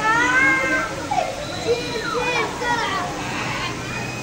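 A child's high-pitched squeal at the very start, followed by more short, high excited cries and children's voices.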